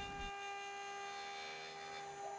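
Faint, steady high whine of a CNC router spindle running, turning a 90-degree V-bit that cuts a diamond pattern into a rotating wooden cane shaft.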